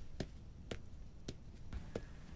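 Footsteps of a man in boots walking, four steps at an even pace of about two a second.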